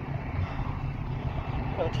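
Low, uneven wind rumble buffeting a phone's microphone, with a man's voice starting near the end.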